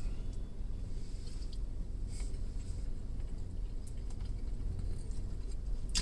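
Faint chewing of a mouthful of Spanish rice, with a few small soft clicks, over a steady low hum in a car cabin.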